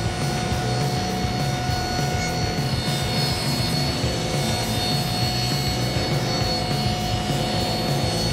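Table saw running steadily, cutting a sheet of plywood, with a constant whine; background music plays over it.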